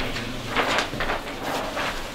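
Large paper plan sheets rustling and crinkling as they are handled on a table, in a series of short scraping rustles.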